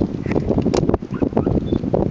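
Wind buffeting the microphone in uneven gusts, with a few light clicks.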